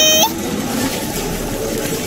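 Water pouring out in a steady stream: a cartoon sound effect of a toy excavator's bucket watering a sapling.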